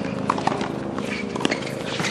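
Scattered light knocks and taps on a hard tennis court between points, tennis balls bouncing and being hit, over a steady low hum.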